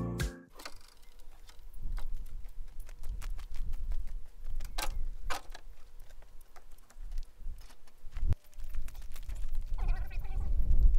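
Footsteps crunching on gravel, a few scattered crunches, over a low rumble of wind on the microphone.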